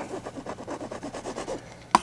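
A palette knife scraping oil paint in quick, repeated strokes, with a sharp tap near the end.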